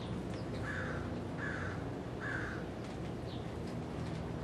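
A crow cawing three times, short harsh calls evenly spaced over about two seconds, over a steady low background hum.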